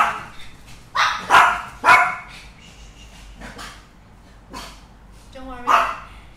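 Small dog barking, three sharp barks in quick succession in the first two seconds, then a couple of fainter ones.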